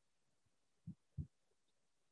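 Near silence, broken by two faint, short, low thumps about a third of a second apart, a little under a second in.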